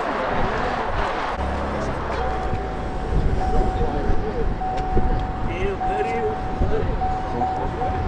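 Cars launching and accelerating away in a street race, most likely the BMW 340i and Cadillac ATS-V. A deep engine rumble builds about a second and a half in, with a steady high whine over it, and voices of onlookers around.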